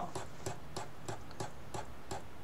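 Computer mouse scroll wheel clicking: a run of light, slightly uneven ticks about three a second as the wheel is turned.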